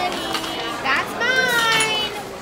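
A young child's high-pitched vocalising: one drawn-out call a little past a second in, falling slightly in pitch, with brief voice fragments before it.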